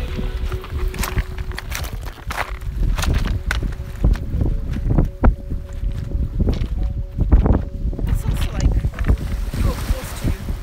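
Footsteps crunching on loose beach pebbles, many irregular clicks and scrunches, over wind rumbling on the microphone.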